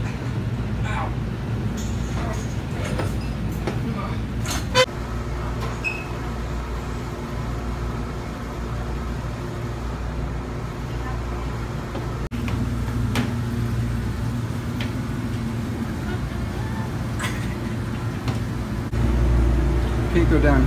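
Steady low mechanical hum in a steel below-deck ship compartment, with scattered knocks and bumps of people moving about; one sharp knock about five seconds in.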